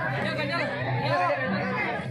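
Crowd of many men shouting and calling over one another, a dense, continuous babble of voices.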